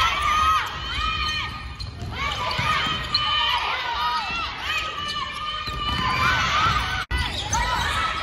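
Volleyball passing drill on a hardwood gym floor: many short, high sneaker squeaks, balls being struck and bouncing, and players calling out. A sudden brief dropout about seven seconds in.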